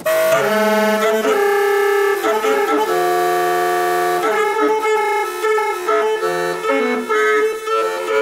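Saxophone and clarinet duo entering together at full volume, holding long sustained notes that shift in pitch every second or so, then breaking into shorter, quicker notes about halfway through.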